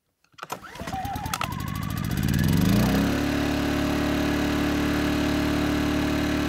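Yamaha 2000-watt inverter generator starting up: its engine speed rises for about two seconds, then it settles into steady running from about three seconds in.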